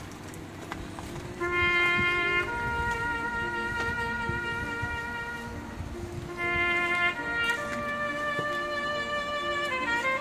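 A solo bugle playing a slow call of long held notes, with a small waver in pitch near the end.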